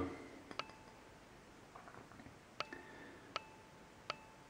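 Quiet room with a few faint, sharp clicks: two close together about half a second in, then two more later, some followed by a short ringing tone.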